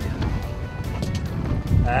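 Background music over a low, uneven rumble of wind on the microphone. A man's drawn-out "ah" begins near the end.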